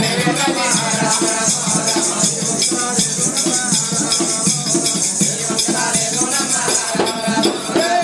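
Oggu Katha folk music: a barrel drum (dolu) beats a steady rhythm under continuous jingling of ankle bells, with a voice singing in places.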